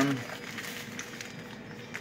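A word trailing off at the start, then quiet room noise with faint crinkles of a plastic snack package being handled.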